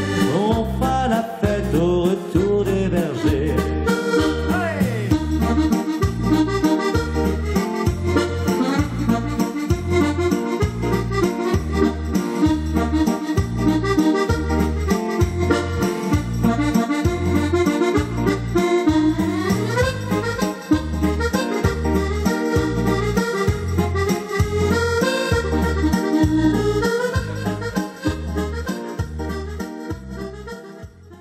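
Chromatic button accordion playing an instrumental melody over a steady bass beat, with a couple of quick sweeping runs up and down the keyboard. The music fades out near the end.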